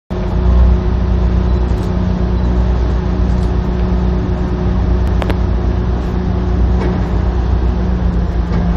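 A ferry's engine drones steadily under the deck, a low hum with a constant pitch, mixed with muffled wind rumble on a phone microphone whose wind-noise suppression keeps the buffeting down. A brief click about five seconds in.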